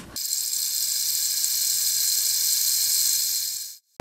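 A loud, steady high-pitched hiss with a faint low hum under it. It cuts off suddenly just before the end.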